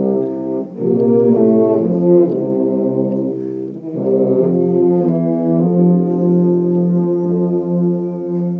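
Ensemble of tubas and euphoniums playing sustained low chords that change every second or two, ending on a long held chord from about two-thirds of the way through.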